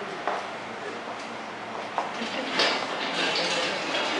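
Indistinct chatter of a small group in a room, with a few light clicks and handling noises.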